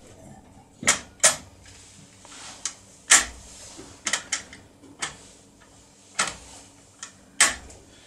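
Sharp metallic clicks, about eight at irregular intervals, from a CR Serrature 6+6 lever lock being worked with a lever pick: the small click of the lock's anti-picking system engaging as a lever drops into its anti-pick position.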